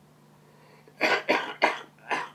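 An elderly man with lung cancer coughs three times in quick succession, starting about a second in.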